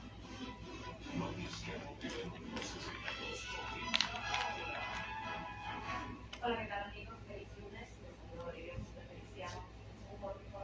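A television playing music and voices in the room, with a steady low hum underneath and a sharp click about four seconds in.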